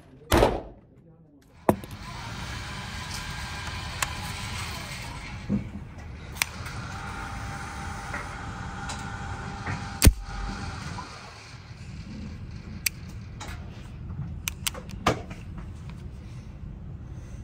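Handling noise from a Beretta 92 FS 9 mm pistol: a loud metallic clack about half a second in as the slide is worked with the gun held muzzle-up, then scattered sharp clicks and one loud knock near the middle. A steady rushing background noise runs under it from about two seconds in.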